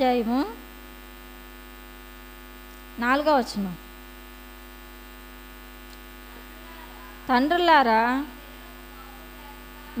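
Steady electrical mains hum, a buzz made of many even tones, heard through the microphone's sound system. A woman's voice speaks two short phrases over it, about three seconds in and again near eight seconds.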